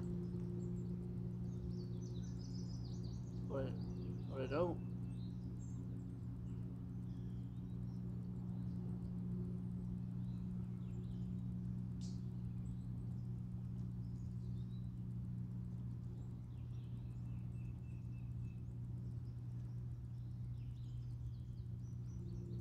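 A steady low hum made of several held pitches, with faint scattered bird chirps. A brief human voice sound comes about four seconds in, and a single sharp click comes midway.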